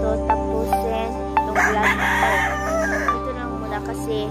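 A rooster crows once, a harsh call of about a second and a half starting about one and a half seconds in, over background music with light plucked notes.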